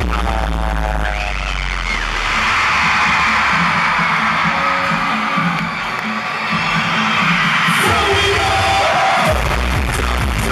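Loud live concert music with a heavy bass beat. After about two seconds the bass drops out and a crowd screams over thinner music, then the bass beat returns near the end.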